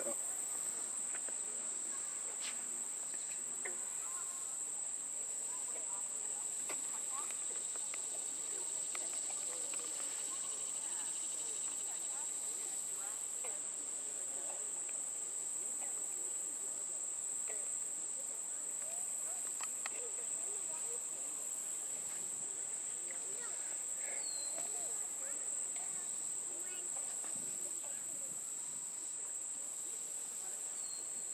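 Insects calling in one steady, high-pitched chorus, with faint scattered ticks beneath it.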